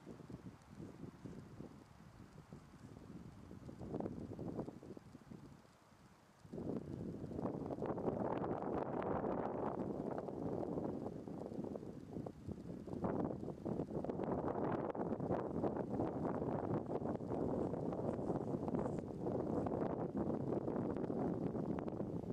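Wind on the microphone, light and patchy at first, then a steady louder rush from about six seconds in.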